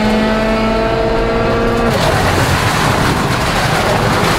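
Interior sound of a Hyundai i20 WRC rally car: its turbocharged four-cylinder engine is held at steady high revs for about two seconds. The engine note then drops away into a loud, even rushing noise of tyres, gravel and wind.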